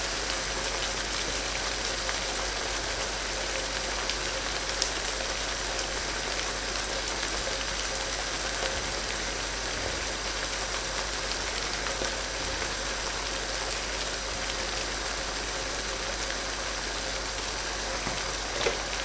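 Chicken curry in a wide karahi pan sizzling and bubbling over high heat, a steady hiss that does not change, with a low steady hum under it.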